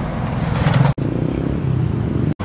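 City street traffic: engines and tyre noise of cars and a motorcycle on the road, steady throughout, with one brief sharp gap about a second in.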